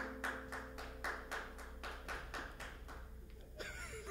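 Faint, evenly timed hand clapping at about four claps a second, a beat that is too fast for the song about to be played. A guitar chord rings out underneath and fades during the first couple of seconds.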